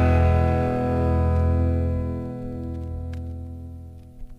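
A sustained, distorted electric guitar chord from the band's last strum ringing out and slowly fading away as the rock song ends.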